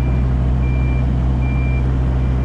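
Warning beeper on a Yanmar 8-ton excavator sounding three evenly spaced beeps at one pitch, over the steady drone of its diesel engine running.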